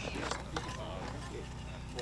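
Speech only: a man says "well", then fainter voices carry on over a low, steady background rumble.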